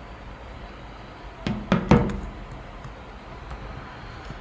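Two short knocks about half a second apart, over a steady low background hum.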